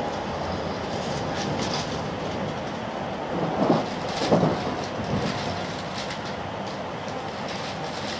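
Steady interior running noise of an N700A Shinkansen passenger car in motion, a continuous hiss and rumble, with two brief louder sounds a little past the middle.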